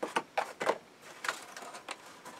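Light, irregular clicks and taps of small plastic parts being handled and picked out of a cardboard box.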